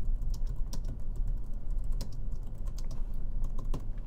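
Computer keyboard being typed on: a quick, irregular run of key clicks as a short phrase is typed out.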